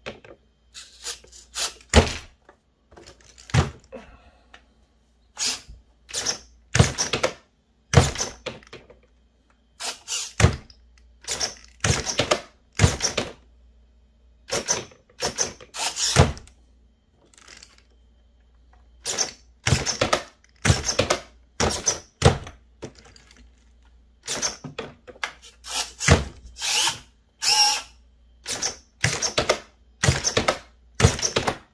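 Redcat SixtyFour RC lowrider hopping on its single servo: the front end is flung up and the wheels, chassis and bumper bang back down on the floor. This makes a long series of sharp knocks and clatters in irregular bursts with short pauses between them.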